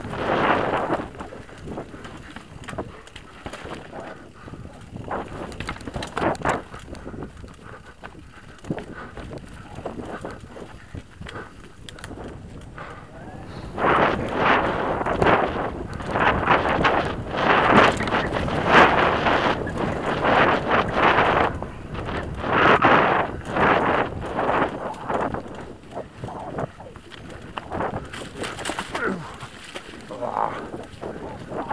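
Mountain bike ridden fast downhill on a forest dirt singletrack: tyres on dirt and leaves, with the bike rattling over bumps and wind buffeting the helmet-camera mic. The rattling gets louder and rougher through the middle stretch.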